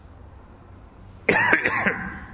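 A man coughs once, briefly, about a second and a quarter in, after a stretch of faint room hiss.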